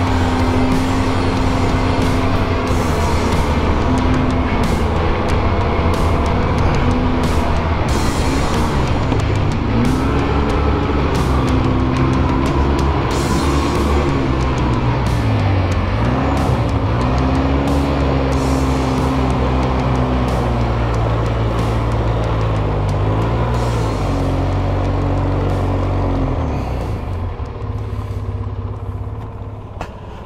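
Polaris Sportsman 700 Twin ATV's twin-cylinder engine running under way, its pitch dipping and climbing back a few times as the throttle is eased and reopened, then fading out near the end.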